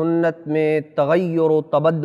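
Only speech: a man's voice talking, several syllables drawn out at an even pitch.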